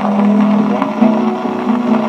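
Viola caipira and violão (acoustic guitar) playing a short strummed instrumental passage between sung verses of a moda de viola, reproduced from a 1936 78 rpm shellac record.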